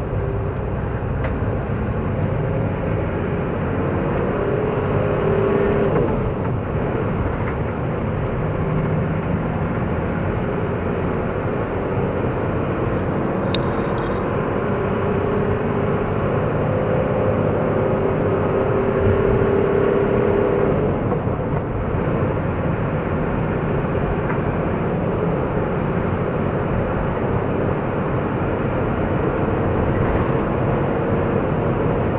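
Steady engine and road noise of a moving vehicle, heard from the vehicle itself, with a faint engine hum that shifts in pitch now and then as it drives in traffic.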